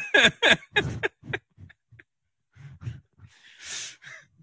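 Laughter: a run of quick laughing bursts that trail off over the first second and a half, then a long, breathy exhale or inhale near the end.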